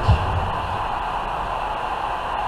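Steady outdoor background noise, an even hiss with a low rumble underneath, with a short low thump at the very start.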